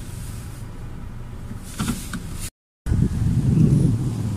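Steady low road and engine rumble inside a moving car's cabin, with a couple of short hissy noises about two seconds in. The sound cuts out for a moment about two-thirds through, then returns as a louder low rumble.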